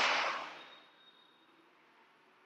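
Plastic irrigant reservoir filled with liquid being turned upside down and seated on an ultrasonic unit: a rushing noise of liquid and handling that fades out within the first second, then near silence.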